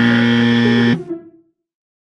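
A buzzer sound effect: one loud, steady, low buzz lasting about a second, then cut off, with a short ringing tail.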